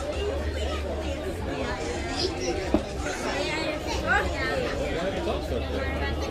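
Background chatter of many overlapping voices, with one sharp click a little under three seconds in and a steady low rumble underneath.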